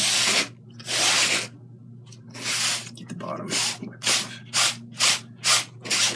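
Paper towel rustling and crinkling in the hand in a string of short bursts that come quicker toward the end, over a low steady hum.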